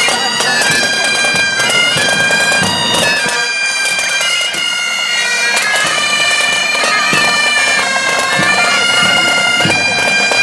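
Highland bagpipes of a marching pipe band playing a tune: melody notes stepping up and down over the pipes' steady drone.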